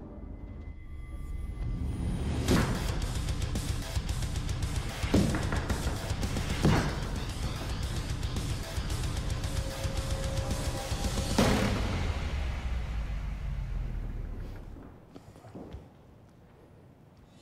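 Dramatic background music with four heavy chopping impacts of a machete striking a shield, the first three within about four seconds and the last after a longer pause. The music fades out near the end.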